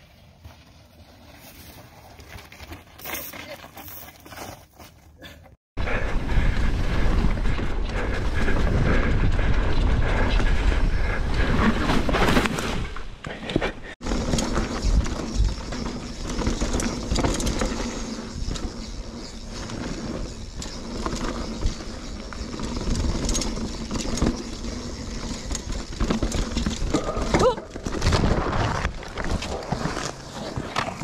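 Mountain bike riding down a dirt trail, heard from a bike-mounted camera: steady tyre and trail noise with the bike knocking and rattling over bumps. The first few seconds are much quieter, and the loud riding noise cuts in abruptly about six seconds in.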